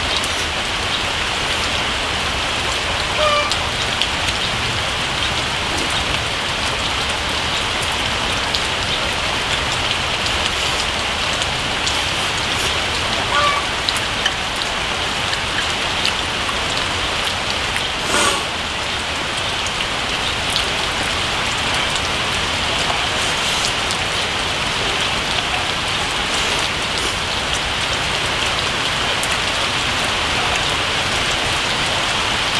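Steady rain falling, a continuous even hiss. A few brief clicks stand out over it, the sharpest about 18 seconds in.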